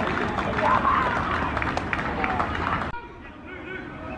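Football match ambience: shouting voices of players and spectators over a steady low rumble, with a few short sharp knocks. About three seconds in the sound cuts abruptly to a quieter, duller take.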